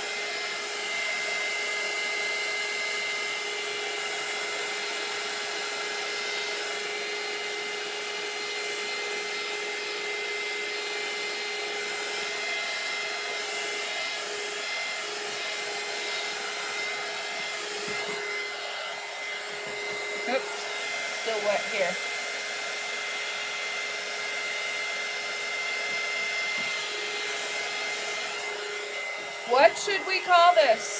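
Small handheld craft heat tool blowing steadily, a level whir with a steady low hum and a thin high whine, drying wet marker ink on a canvas.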